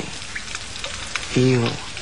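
Steady rain falling: a continuous hiss with scattered patter of drops.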